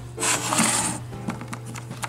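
Handling noise on a plastic hand-crank weather radio: a brief rustle as fingers move over the case and its telescopic antenna, then a few light clicks. Faint music plays underneath.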